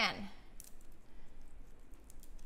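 Faint, scattered small clicks and crackles of a marshmallow popcorn ball being squeezed and pressed tight around a straw in the hands.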